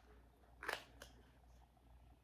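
Small plastic wax-melt cup being handled and opened: a short crackle about two-thirds of a second in and a light click just after, otherwise near silence.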